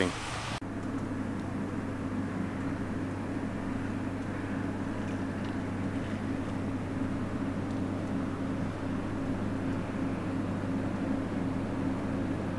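Steady low mechanical hum with an even pitch that does not change.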